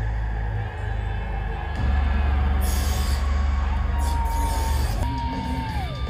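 Heavy metal band playing live through a concert PA, heard from the crowd: a dense low rumble that turns much heavier about two seconds in. Later a thin high held tone comes in and glides down in pitch near the end.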